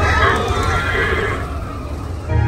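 A horse whinny, a wavering call that rises and falls and dies away about a second and a half in, played as a sound effect through the Slinky Dog Dash roller coaster's loudspeakers. A steady low rumble runs underneath.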